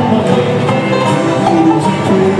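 Live bluegrass band playing: banjo, acoustic guitars and fiddle together over a bass line, with a steady beat.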